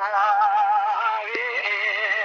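A man singing unaccompanied in the Kurdish dengbêj style: long held, ornamented notes with heavy, wavering vibrato.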